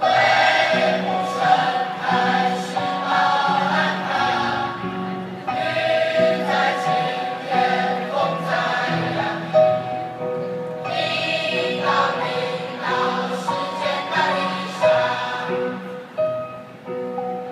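A large mixed group of young men and women singing together as a choir, in phrases of held notes with brief breaks between them.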